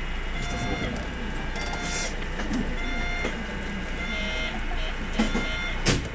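Short electronic tones repeating roughly once a second over a steady low hum, in the cab of a stationary electric train. A brief hiss comes about two seconds in, and a sharp click near the end.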